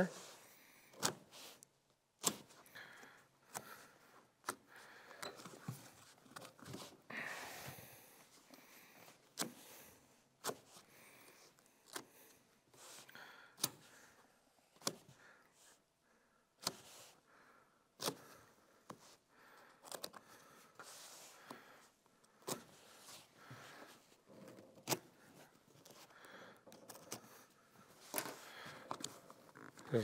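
Faint razor blade cutting automotive trunk carpet in quick strokes, with scattered light taps and rustling as the carpet-covered wooden panel is handled.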